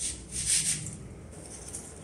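Artificial leaves and flowers rustling as they are handled and tucked into the arrangement, in two short bursts within the first second, the louder one about half a second in.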